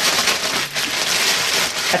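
Plastic bag crinkling and rustling continuously as chicken wings inside it are shaken and kneaded to coat them in a corn starch and spice mix.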